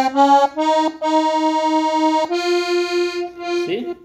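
Piano accordion playing a slow run of single notes that step upward, each note sounding in several octaves at once, the last held about a second and a half.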